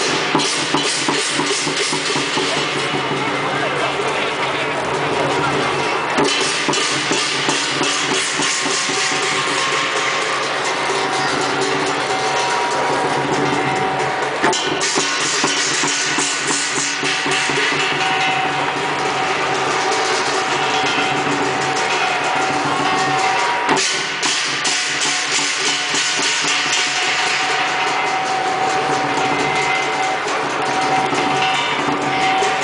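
Lion dance percussion: a large Chinese lion drum beaten in a fast, driving rhythm, with cymbals crashing along in a bright ringing wash. It keeps going without a break.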